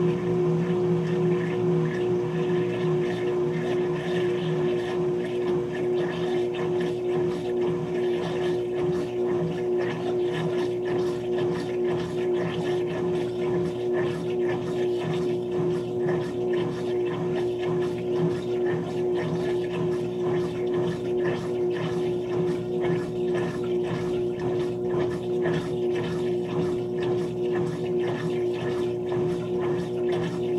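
Hotpoint HTW240ASKWS top-load washer in its final high-speed spin after the rinse: a steady motor hum with one constant tone.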